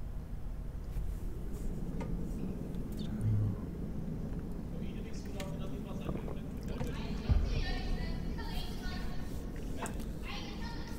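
Curling rink ambience: a steady low rumble with indistinct voices from about halfway through, a dull thump about 3 seconds in and a sharper knock about 7 seconds in.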